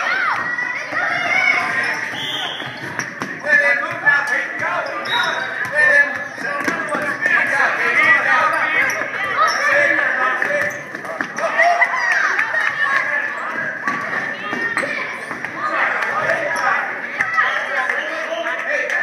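A basketball bouncing on a hardwood gym floor during a youth game, with knocks from play and a steady chatter of spectators' voices in the hall.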